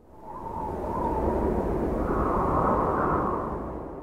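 A cinematic whoosh-and-rumble sound effect that swells up over the first second, holds, and fades out near the end.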